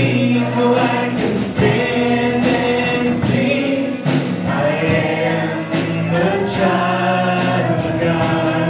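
Live church worship band playing a song: voices singing over acoustic guitar, keyboard and drums keeping a steady beat.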